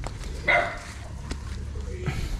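A dog gives a single short bark about half a second in.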